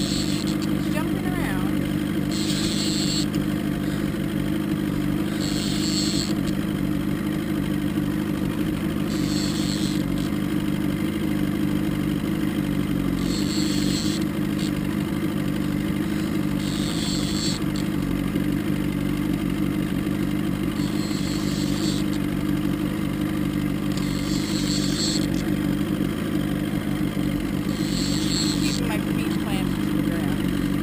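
Outboard motor running steadily at trolling speed, a low, even drone, with a brief hiss about every three to four seconds.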